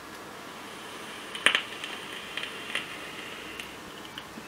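E-liquid crackling and popping on the hot coil of a dripping atomizer on a mechanical mod during a drag. A faint hiss carries a scatter of sharp pops, the loudest about one and a half seconds in.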